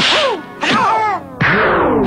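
Kung-fu film style fight sound effects sampled into a hip-hop intro: three sudden loud whacks, each trailing off in a falling pitch.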